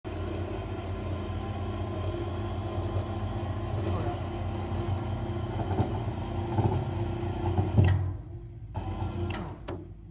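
Engine of the lifting equipment running steadily at a constant pitch while the cable hauls the tank upright, then stopping abruptly about eight seconds in.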